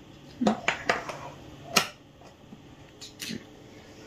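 A stainless steel mesh sieve worked over a glass mixing bowl to sift flour: a few scattered light metallic taps and clicks, the sharpest nearly two seconds in.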